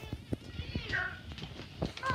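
Faint scattered clicks and knocks with one brief high-pitched voice sound about a second in, a child's voice.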